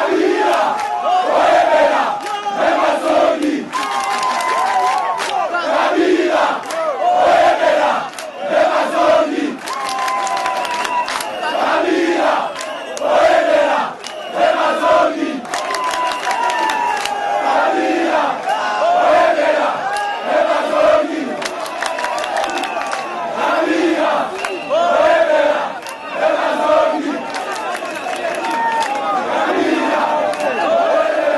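Large crowd shouting and cheering, many voices chanting together in a steady repeated rhythm that surges about every second and a half.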